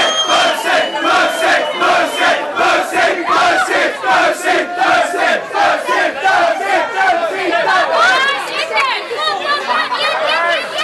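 A crowd of young people shouting and chanting together, with an even beat of about three a second. The voices climb into higher, overlapping yells near the end.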